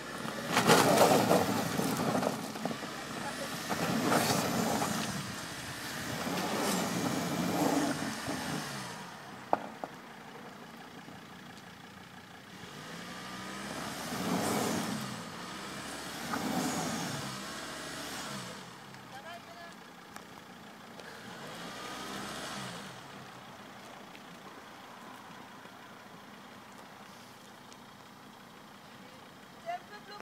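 Volvo XC70 D5's five-cylinder turbodiesel revved in about six bursts, each rising and falling, as the car strains to climb out of a shallow stream bed without getting out; quieter from about twenty-three seconds in.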